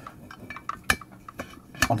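A few sharp metallic clicks and knocks as a Proxxon rotary tool is handled against the metal clamp collar of its drill stand; the loudest comes about halfway through, another just before the end.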